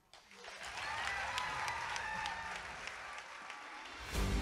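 Audience applauding, building up over the first second and easing slightly near the end.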